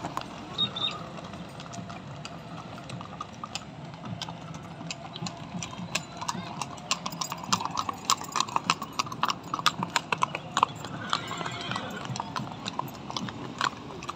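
Horse hooves clopping on paving at a walk: an irregular run of sharp clicks that grows busier from about four seconds in, with faint voices in the background.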